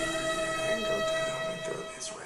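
A held electronic tone, one steady note with several overtones, slowly fading and cut off abruptly at the end: an added music or sound-effect drone.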